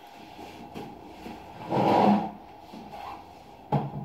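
Things being shifted about by hand: a rubbing scrape about two seconds in and a short sharp knock near the end.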